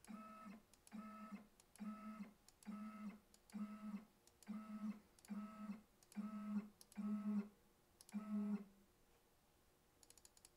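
CNC router's Z-axis stepper motor whining in about ten short, steady-pitched bursts, each roughly half a second long and each starting with a click, as the spindle is jogged downward step by step. The last move ends a little over 8 s in.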